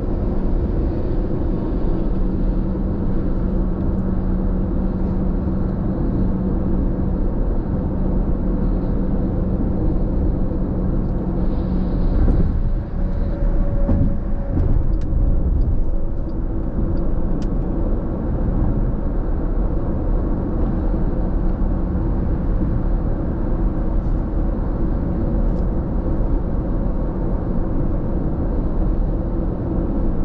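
Steady road and engine noise heard inside a car cruising at freeway speed, with a low steady hum for the first dozen seconds or so.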